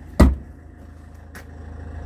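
Range Rover Evoque SD4's four-cylinder turbodiesel idling steadily with a low, even rumble. A single sharp thump about a quarter second in is the loudest sound.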